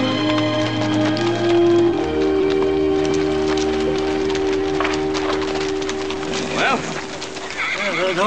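Horses' hooves clip-clopping on dirt as a small group is led into a corral, with one horse neighing near the end, over orchestral score music.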